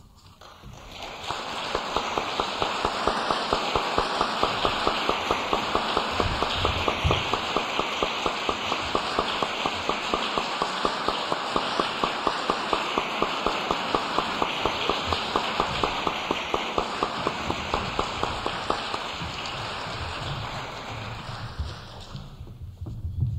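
Audience applauding, building up over the first couple of seconds, holding steady with a regular pulse of about three beats a second, and fading near the end.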